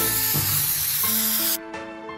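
Spray-paint can hissing for about a second and a half, then cutting off, over a background tune.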